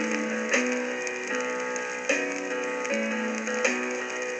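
Instrumental passage of a pop song demo played from an acetate disc on a turntable: held chords with a sharp, regular beat about every 0.8 seconds, between sung lines.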